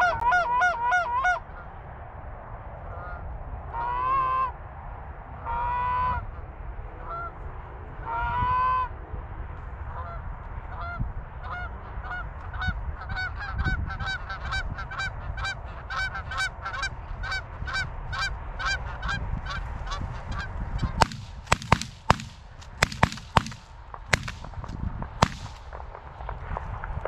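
Canada geese honking and clucking: a burst of clucks, then three drawn-out honks, then a long, fast run of honks. Near the end, a quick series of loud, sharp bangs cuts in.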